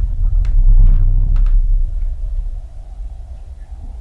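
Deep, low rumble, loudest in the first two seconds and then fading, with a couple of sharp clicks about half a second and a second and a half in.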